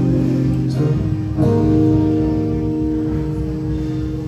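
Acoustic guitar strumming chords. A chord struck about a second and a half in rings on and slowly fades.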